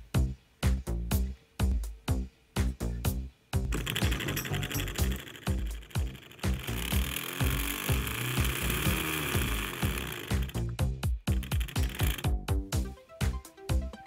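Background music with a steady beat. Under it, from about four seconds in until about twelve seconds, a steady mechanical noise: a small DC motor spinning the web slinger's spool through a 3D-printed coupling with a rubber buffer, being tested.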